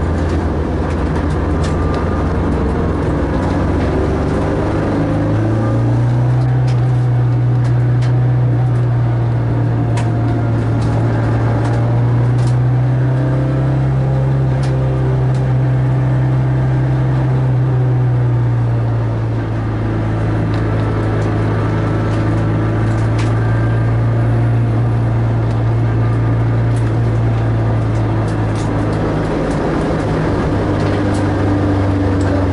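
Renault Clio 2 RS four-cylinder engine running steadily while driving on a circuit, heard from inside the cabin. Its pitch rises a little about six seconds in and eases back down a little past the middle.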